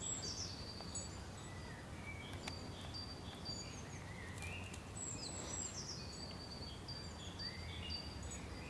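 Small birds chirping and calling in short, high-pitched notes, some sliding downward, scattered throughout, over a steady low background rumble.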